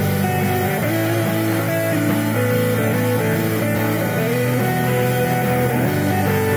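Rock band playing live: electric guitars, bass guitar and drums together, with a guitar line of held notes that slide between pitches.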